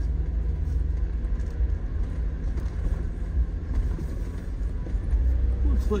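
Road noise inside a vehicle's cabin while driving on a dirt road: a steady low rumble of engine and tyres. A faint steady hum runs for about the first four seconds.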